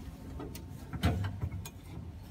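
A few faint clicks and a soft knock about a second in: hands taking hold of the hand-operated air pump that pressurises the fuel tank of a 1924 Alfa Romeo RL Targa Florio before a cold start.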